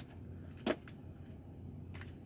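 Small plastic clicks and a sharp snap about two-thirds of a second in, from a new over-ear headset being handled and flexed at its headband, over a low steady hum.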